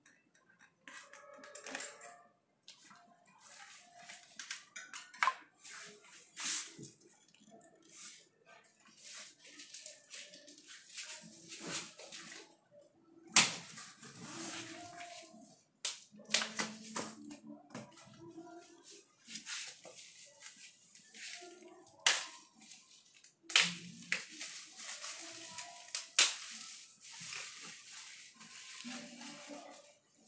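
Hands working on a boxed bicycle: plastic cable ties being released and pulled off the frame and handlebars, with irregular clicks, knocks and rustling of packing. The sharpest clicks come about halfway through and twice more about two-thirds of the way in.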